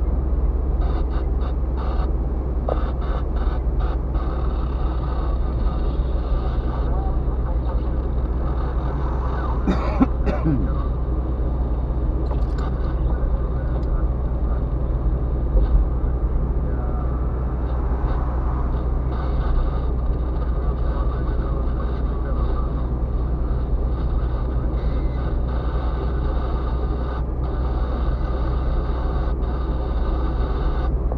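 Steady in-cabin driving noise of a car on the move: a low drone of engine and tyres on a wet road, heard from a dashboard camera inside the car. A brief sharp noise stands out about ten seconds in.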